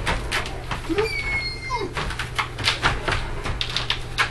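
Wire dog crate rattling and clinking in quick irregular clicks as a Great Dane shifts about inside and works at the door. A short whine from the dog comes about a second in.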